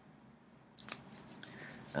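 A few faint, short clicks about a second into otherwise quiet room tone.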